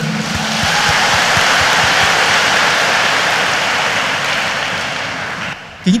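A congregation's round of applause: steady clapping that tapers off shortly before the end.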